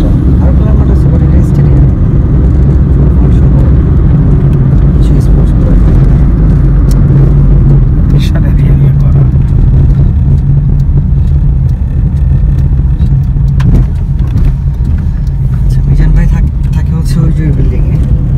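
Road noise of a moving car heard from inside the cabin: a loud, steady low rumble of engine and tyres, with a few scattered clicks.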